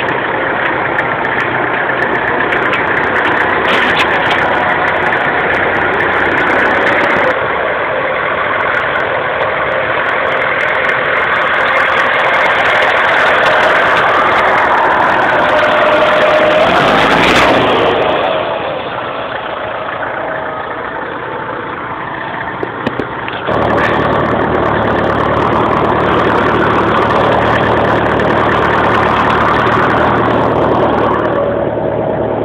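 IMT tractor diesel engine running steadily. A little past halfway it drops quieter for a few seconds, then comes back suddenly with a deeper, steady engine note.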